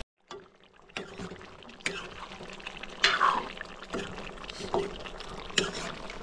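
Water being poured into an aluminium wok of frying chicken, splashing over the meat, while a steel ladle stirs and knocks against the pan now and then.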